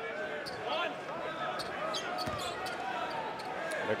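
Arena crowd chatter from many voices, with a basketball being bounced on the hardwood court by a player at the free-throw line, heard as a few short thuds.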